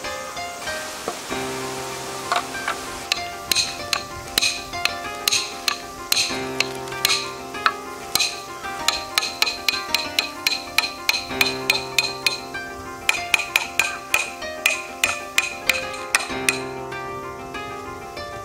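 A hammer repeatedly strikes the back of a blade set across the end of a green bamboo tube, driving it down to split the tube in half: sharp knocks, roughly two or three a second, some with a brief metallic ring, over background music.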